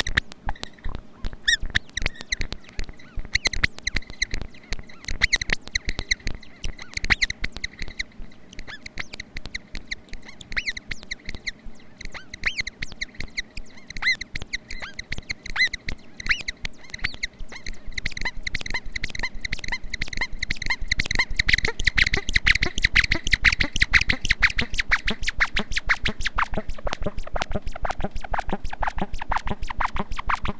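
MFOS Noise Toaster DIY analog synthesizer, played by turning its knobs, putting out a fast stream of clicky, chirping pulses over a high pitched tone. The pulses grow louder and denser about two thirds of the way through, and a pitch sweeps downward near the end.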